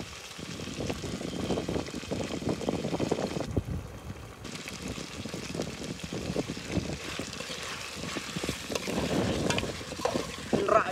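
Spicy pork curry bubbling and spitting in an aluminium pot over a wood fire, with wind on the microphone. Near the end, a metal spoon clinks and scrapes against the pot as it is stirred.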